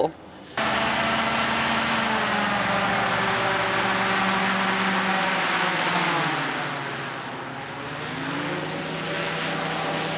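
Wind sled's high-powered engines and propellers running hard, a loud steady drone that cuts in about half a second in. Its pitch and loudness sag around six seconds in and climb again near the end as the sled passes.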